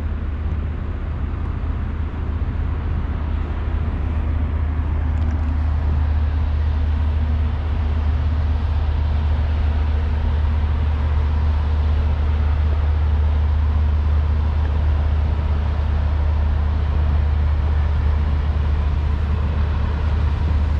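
A steady low engine drone under a haze of wind and water noise, slowly growing louder.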